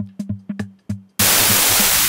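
A programmed drum beat of quick, evenly spaced hits. About a second in, a loud synthesized white-noise whoosh from a Subtractor synth starts abruptly. Its notch filter sweeps upward through the noise.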